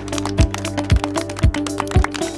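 Background music with a steady beat: a kick drum about twice a second under held tones.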